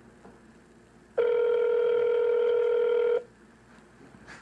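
Telephone ringback tone heard through a phone's speaker: one steady ring about two seconds long, starting about a second in. It signals that the call is ringing through to the store's hardware department.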